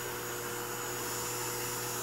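Small 3-volt DC hobby motor spinning a red plastic propeller fan, running steadily with a constant electric hum and whine.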